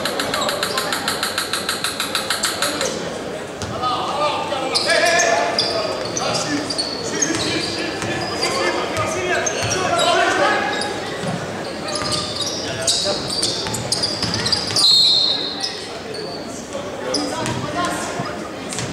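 Basketball game sounds echoing in a large hall: the ball bouncing, shoes on the court and players' and spectators' voices. A rapid rattle runs for the first few seconds, and a referee's whistle sounds for about a second near the end, calling a foul before free throws.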